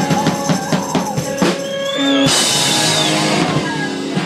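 Live indie rock band playing through a PA with a drum kit: a quick run of drum hits, then a bright, sustained wash from about two seconds in.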